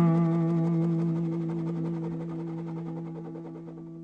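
Guitar music: a strummed chord is left ringing and fades slowly away.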